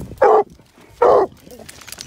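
A hunting hound barking twice, short loud barks about a second apart, at the hole in a rock pile where a bobcat has gone in: she is marking the holed cat.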